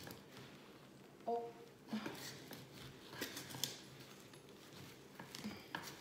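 Gloved fingers scraping and digging at hard-packed potting soil around the sides of a terracotta pot, working a potted aloe vera plant loose: faint, irregular scratching.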